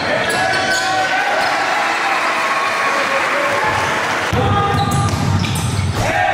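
Hip-hop song with rapped or sung vocals over a heavy bass beat. The bass drops out about half a second in and comes back just after four seconds.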